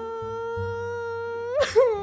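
A woman wailing in one long, steady crying note, which breaks into louder sobbing gasps near the end.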